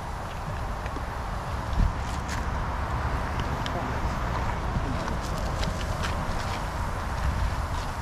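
Raw chicken breasts sizzling on a hot charcoal grill grate, a steady sizzle with scattered small crackles over a low rumble.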